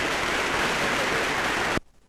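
Audience applauding, a steady dense clapping that cuts off suddenly near the end.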